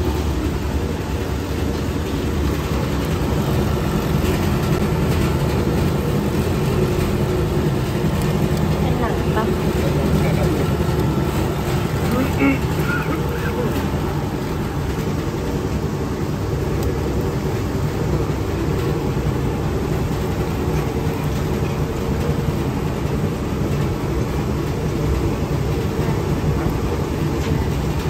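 Fish deboner (meat-bone separator) running steadily with a low, even machine hum as it presses chicken meat through its perforated drum, separating the meat from bone and skin.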